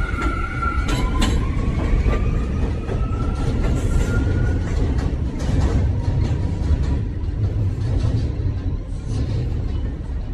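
Electric subway train accelerating away over the rails with a steady low rumble. A motor whine rises in pitch over the first few seconds, and wheels click over the rail joints.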